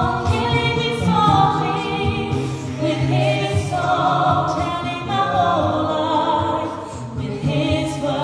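A mixed-voice a cappella group singing in harmony through handheld microphones, several higher voices moving over a sustained low bass line.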